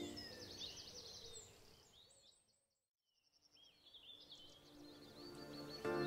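Background music with bird chirps mixed in, fading out to silence about halfway through; the chirping comes back first and the music returns near the end.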